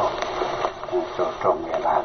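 Continuous speech from a Khmer-language radio news broadcast, with narrow, radio-like sound.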